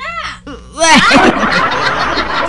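People laughing: a single voice laughing briefly, then about a second in a louder burst of several voices laughing together.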